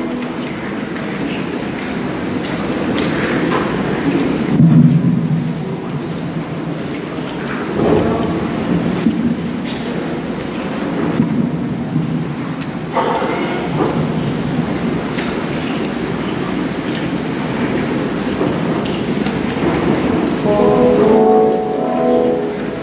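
A large choir of voices singing together to keyboard accompaniment, blurred into an echoing wash that swells phrase by phrase.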